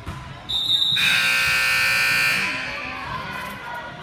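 Gymnasium scoreboard buzzer sounding once for about a second and a half, a harsh steady blare that echoes around the hall as it dies away. A brief high tone comes just before it.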